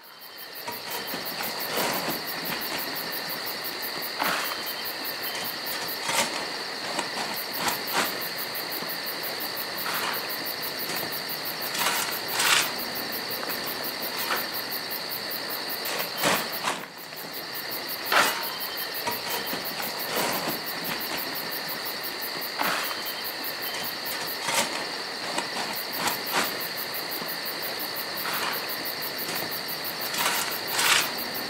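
Crickets chirping in a steady high trill, broken by sharp clicks every few seconds and a brief dip about seventeen seconds in.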